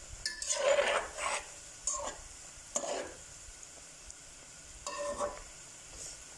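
Bread gulab jamun balls deep-frying in oil in a metal pot on a high flame, sizzling steadily. A utensil stirs through the oil in about four short strokes.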